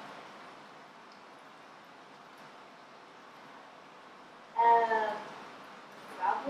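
Quiet room tone, then about four and a half seconds in a young girl's brief high-pitched vocal sound, one held note of about half a second that falls slightly and fades.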